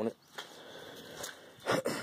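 Faint background noise, then a man clearing his throat near the end.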